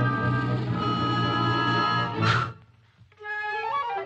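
Orchestral cartoon score playing held woodwind and string chords, broken about two seconds in by a short puff of breath as a chipmunk blows out a lit match. The music stops briefly after the puff, then comes back with short rising notes.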